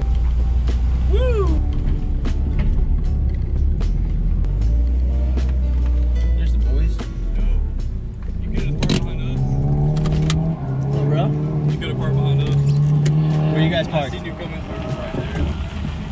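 A Mini Cooper's engine and road noise heard from inside its cabin as it drives slowly. A deep steady drone fills the first half, then the engine's note steps up and down in pitch.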